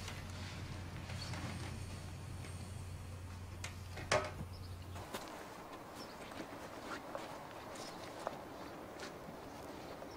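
Quiet background: a low steady hum with two short clicks about four seconds in, then from halfway a fainter, even ambience with scattered light ticks.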